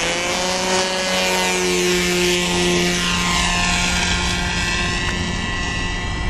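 The O.S. .40 model engine and propeller of a Hobbico Superstar 40 RC trainer plane running at high throttle through takeoff and climb-out: a loud, steady, high-pitched buzz.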